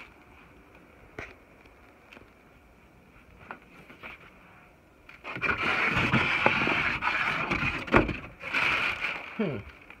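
A cardboard shipping box and its packaging being handled and rummaged through: faint clicks at first, then, about five seconds in, a loud stretch of scraping and rustling with a sharp knock near the end.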